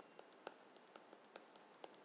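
Faint clicks of a stylus tapping on a tablet screen while handwriting, several irregular taps a second over near silence.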